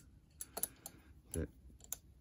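Light metallic clicks and taps, several irregular ones over two seconds, from a homemade lock-pick tension tool (a steel bolt through a metal block) being handled and fitted against the open mortise lock's brass works.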